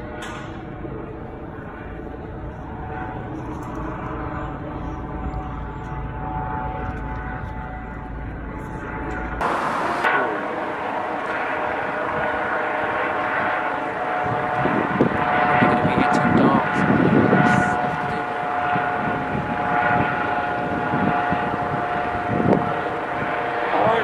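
Outdoor ambience with a steady engine drone and scattered voices; the sound changes abruptly about nine and a half seconds in, where the recording cuts.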